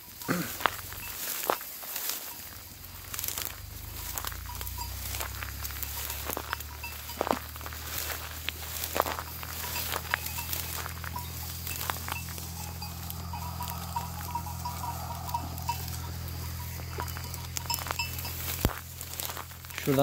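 Sheep grazing in standing dry wheat: scattered crackles and clicks of stalks being pushed through and bitten, over a steady low hum that sets in a few seconds in. A faint wavering tone comes and goes in the middle.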